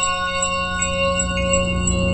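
Intro sting of bell-like chimes: several sustained ringing tones over a low drone, with a light high tick repeating about two or three times a second like a loading timer.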